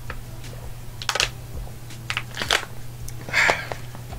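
A small plastic water bottle crinkling and crackling in the hand as someone drinks from it, in three short bursts, over a steady low hum.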